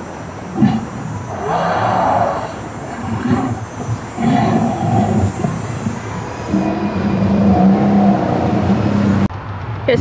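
Recorded dinosaur roars and growls played through a loudspeaker at an animatronic dinosaur. There are several separate calls, and near the end a long, low growl that cuts off abruptly.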